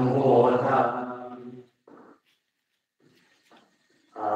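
Buddhist monks chanting together in Pali, a low unison drone of men's voices that trails off a little before halfway, then falls silent for about two seconds.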